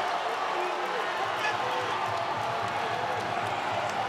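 Basketball arena crowd cheering steadily after a made basket, with scattered shouts.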